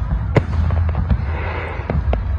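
Aerial firework shells going off: one sharp bang about a third of a second in, a few fainter pops, and a spell of crackling in the second half, over a steady low rumble.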